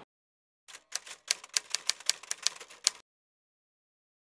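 Typewriter keystroke sound effect: a quick run of sharp key clicks, about eight a second, starting under a second in and stopping abruptly about two seconds later.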